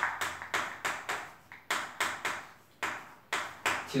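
Chalk writing on a blackboard: about a dozen short, sharp taps and strokes at an uneven pace as characters are written.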